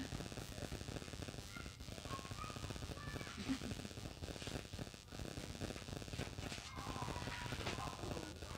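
Faint background noise: a low crackling rumble with a few faint, indistinct voices.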